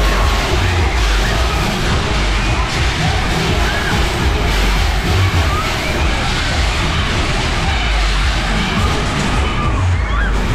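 Wind rushing and buffeting over an on-board camera's microphone as the Welte Big Spin fairground ride spins, a steady low rumble. Fairground music and riders' voices sound faintly underneath.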